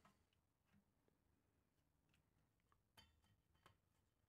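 Near silence, with a few faint clicks and taps from a circuit board being handled, one just under a second in and a small cluster about three seconds in.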